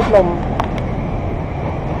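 Steady low rumble of city street traffic, with a brief click about half a second in.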